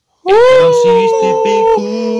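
A long howl starting about a quarter second in. It swoops up, holds a wavering note that slowly sags, breaks off near the end, and a second howl follows.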